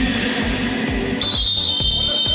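Music playing in a gym hall under repeated low thumps of a basketball bouncing on the court, and about a second in a long, steady high-pitched tone starts and runs on.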